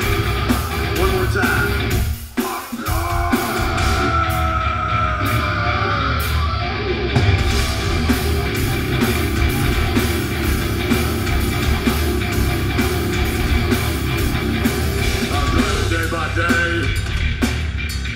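Live heavy metal band playing: distorted electric guitars, bass guitar and drum kit, loud and dense, with a brief break about two seconds in before the full band comes back in.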